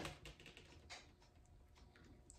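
Near silence with a few faint small clicks: a plastic water bottle being handled and its cap twisted off.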